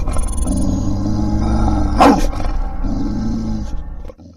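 Logo-intro sound effect: a deep rumble with a layered low sound under it, one sharp sweeping hit about halfway through, fading out and cutting off at the end.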